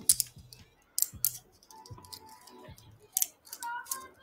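Metal handcuffs ratcheting shut on a person's wrists: several short, sharp metallic clicks spread across a few seconds.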